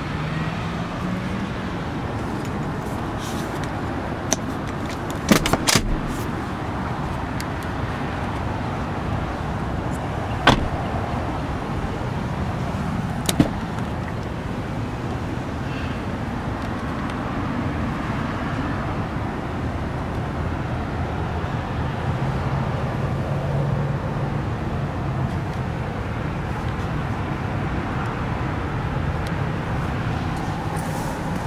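Steady background noise with a low engine hum, broken by a few sharp clicks and knocks: a quick cluster about five seconds in, then single ones near ten and thirteen seconds.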